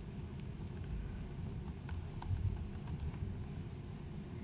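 Typing on a laptop keyboard: irregular key clicks over a low, steady room hum.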